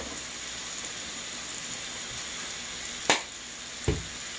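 Sliced onions frying in oil in a skillet, a steady sizzle, with fries frying in a pot alongside. Two sharp clicks, one about three seconds in and one near the end.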